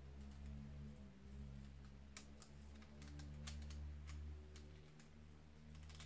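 Faint, irregular clicks and taps of a hard-plastic toy figure being handled as its tail is worked, over a low steady hum.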